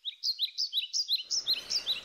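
A small bird chirping rapidly: a quick run of short, high, upward-sweeping chirps, about five a second, alternating between two pitches.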